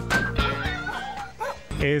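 A TV theme jingle playing, with a dog's yips and whimpers mixed into it. It cuts off near the end as a man's voice comes in.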